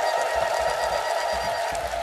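A steady high-pitched tone with a hiss under it, holding one pitch and fading out near the end.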